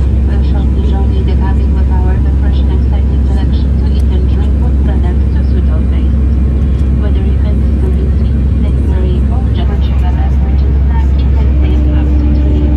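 Airliner cabin noise in flight: the jet engines and airflow make a loud, steady low rumble, with faint voices of people in the cabin. A steady low hum comes in near the end.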